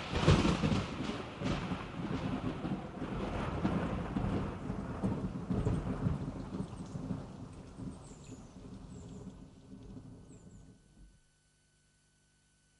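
Thunder rumbling with rain, loudest at the start and fading away over about ten seconds before stopping near the end.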